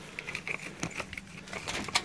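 Light metallic jangling and irregular small clicks as a cabin door is opened, with a sharper click near the end.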